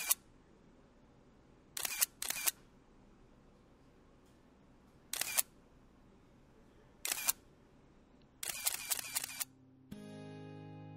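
A series of short, sharp clicks separated by near silence: two close together about two seconds in, one near five seconds, one near seven, then a quicker run of several clicks just before the end.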